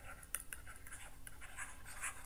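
Faint scratching of a stylus writing on a tablet, in many short strokes.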